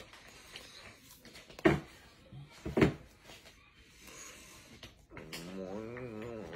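Two sharp thumps about a second apart, then a man's wordless voice rising and falling from about five seconds in.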